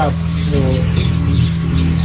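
A steady low hum runs throughout, with a man's brief spoken 'So' about half a second in.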